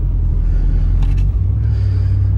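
Low, steady engine and road rumble heard inside a pickup truck's cabin while driving. About a second and a half in, the drone changes to a stronger, steadier low hum.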